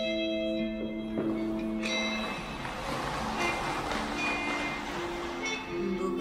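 A woman singing live into a microphone over a backing track: she holds one long note, then about three seconds of instrumental backing with a noisy wash follow, and her voice comes back near the end.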